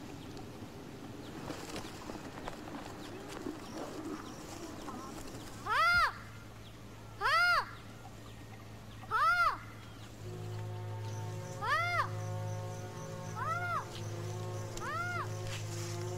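An animal calling six times, each call short and rising then falling in pitch, a second or two apart. After about ten seconds a low held music chord comes in beneath the calls.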